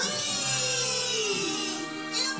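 Children's cartoon music playing from a television, with a slowly falling tone through the middle.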